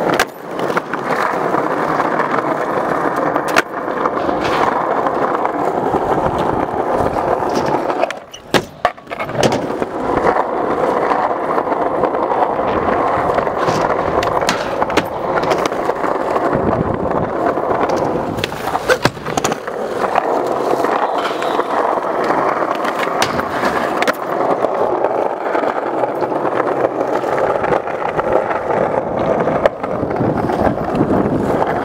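Skateboard wheels rolling over rough concrete, a steady gritty rumble, broken by sharp clacks of boards popping and landing. The rolling noise drops out briefly about eight seconds in, among a cluster of clacks.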